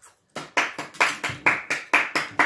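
Rapid, even hand clapping at about four claps a second, starting about half a second in.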